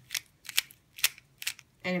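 Plastic Square-1 puzzle clicking as its top layer is turned clockwise, four sharp clicks about half a second apart.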